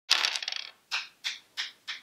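A six-sided die thrown onto a hard tabletop: a clattering landing, then four short clicks about a third of a second apart, each a little fainter, as it bounces and tumbles to rest.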